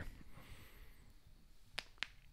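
Quiet room tone, then a single sharp finger snap near the end.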